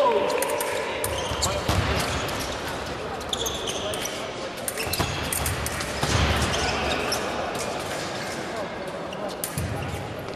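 Fencing bout: fencers' footwork on a sports-hall floor, with sharp clicks, knocks and shoe squeaks. About six seconds in there is a loud burst with heavy stamps as an attack lands.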